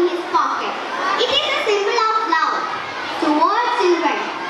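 A girl speaking into a handheld microphone, her high voice rising and falling, with some long drawn-out syllables.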